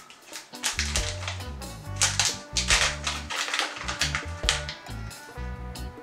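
A sealed plastic pouch being crinkled and torn open by hand: a run of irregular sharp crackles and rustles that come thicker around the second and third seconds. Background music with a steady bass line runs underneath.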